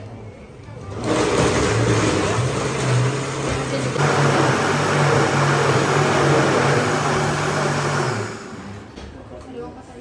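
Commercial countertop blender running at high speed on a pink fruit smoothie. It starts about a second in, its motor hum climbs in pitch shortly after, and it cuts off just after eight seconds.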